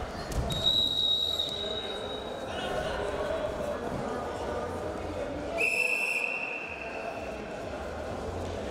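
Two long, steady referee's whistle blasts: a higher-pitched one about half a second in lasting some two seconds, then a lower-pitched one near the six-second mark, over the murmur of voices in the arena.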